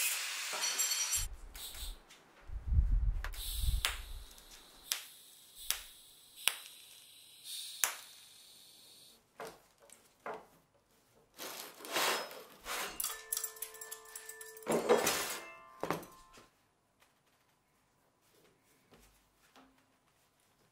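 An angle grinder grinds steel and cuts off about a second in. Then comes a string of knocks, taps and clanks of metal parts being handled, with a brief ringing tone a little past the middle.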